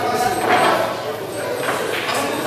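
Indistinct voices and crowd chatter from people talking around the table.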